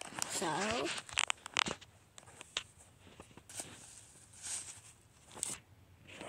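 A homemade paper squishy being handled and pulled open: paper and tape crackling and tearing in a few short sharp bursts, with quiet between.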